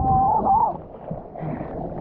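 Muffled water rush on an action camera's microphone as it comes up from under the water, with a brief wavering tone in the first second, then quieter water sloshing and splashing around the surfboard as the surfer paddles.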